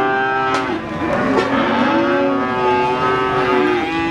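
Cattle mooing in long, drawn-out calls: one call ends about a second in and another runs on almost to the end.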